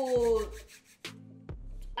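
A woman's drawn-out 'ooh', falling in pitch and fading out about half a second in, followed by quiet with a faint low hum and a couple of soft clicks.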